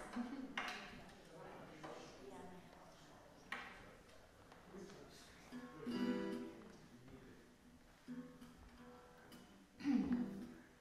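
Acoustic guitar played softly: a few separate plucked notes and light strums with pauses between, each left to ring and fade.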